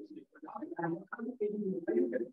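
Indistinct speech from an off-camera voice in a small room.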